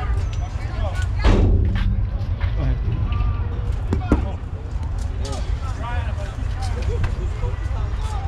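Scattered voices of players and spectators across a youth baseball field, over a steady low wind rumble on the microphone. A loud sharp knock comes a little over a second in, and a shorter sharp click at about four seconds.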